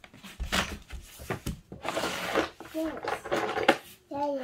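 Toy train cars clattering and knocking together as a hand rummages through a plastic storage bin of toys, a run of sharp rattles and knocks.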